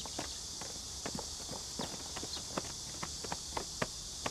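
Irregular footsteps and scuffing on a hard surface, several short knocks a second, over a steady high-pitched hiss.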